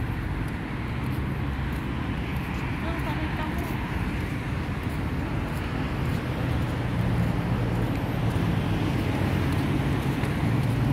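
Steady road-traffic noise from cars driving past, a continuous low rumble that grows a little louder about seven seconds in.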